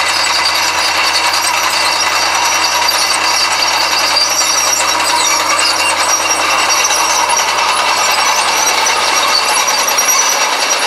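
Fiat 120C crawler working under load with disc harrows, its engine running steadily along with the clank of its steel tracks.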